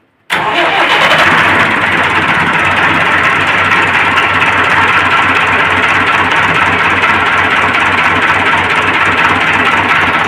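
Massey Ferguson 375 tractor's four-cylinder diesel engine starting up, catching abruptly about a third of a second in and then running steadily and loudly at idle.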